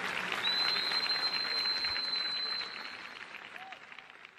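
Audience applauding as a live song ends, the clapping fading away, with a high steady whistle held for about two seconds near the start.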